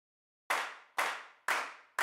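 Three sharp claps, evenly spaced half a second apart like a count-in, each dying away quickly, with a fourth landing at the very end.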